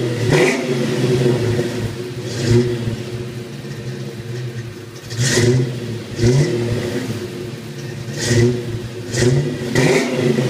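Ford 5.0 V8 in a 1995 Mustang GT with shorty headers and a Flowmaster exhaust, idling at the tailpipes and blipped on the throttle about seven times, each rev rising sharply and dropping back to idle.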